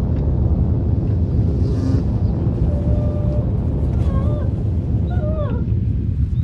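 A steady low rumble, with several short falling animal calls, one after another in the second half.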